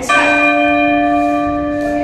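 A single bell chime from a workout interval timer, struck once just after the start and ringing steadily for about two seconds, marking the end of a timed exercise round.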